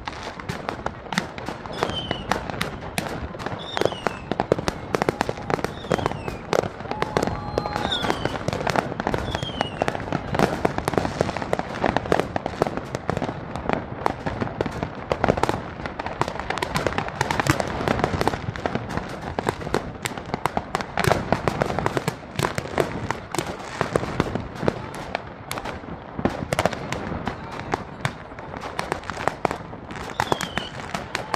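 Fireworks going off in a continuous dense barrage of bangs and crackling, with several short falling whistles in the first ten seconds or so.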